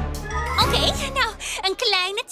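Cartoon background music with a jingling effect, which stops near the end, overlaid from about half a second in by a character's wordless voice sounds that glide up and down in pitch.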